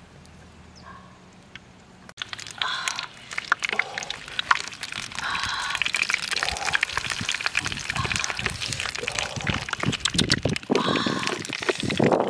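Quiet outdoor background, then about two seconds in, close food-handling sounds begin: banana leaves rustling and crinkling as they are laid into a metal wok, with many quick clicks and taps of a wooden spoon and of raw meat being set down on the leaves.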